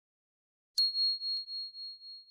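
A single high, pure bell ding about a second in, ringing on with a wavering, slowly fading tone: the notification-bell sound effect of a subscribe-button animation.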